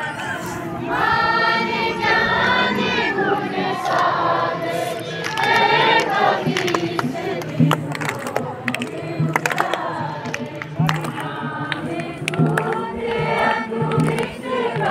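A crowd singing a song together in unison, many voices at once, with a low regular beat underneath from about halfway through.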